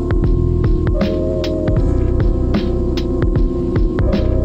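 Dark boom bap hip-hop instrumental beat: heavy low bass, crisp drum hits at a steady tempo and a held, droning sample loop.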